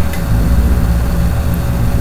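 A steady low mechanical rumble, like a motor running, with a faint steady tone above it.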